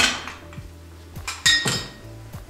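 A metal spoon clinking against glassware: a few light knocks, then a brighter clink with a short ring about one and a half seconds in.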